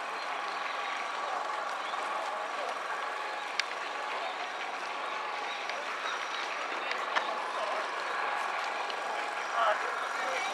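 Outdoor crowd ambience: indistinct voices of people talking in the background over a steady hum, with a couple of short sharp clicks.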